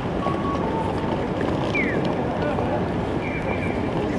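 Busy crosswalk noise of a crowd on foot and city traffic, with the electronic audible pedestrian signal of a Japanese crossing: a repeating two-note 'cuckoo' call, high then low, and a couple of short falling bird-like chirps. The tones mark the walk phase of the crossing.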